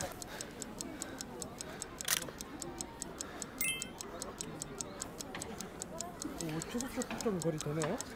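Clock-ticking sound effect: a steady, rapid run of even ticks laid over a countdown, with a louder single click about two seconds in and a brief high chime partway through.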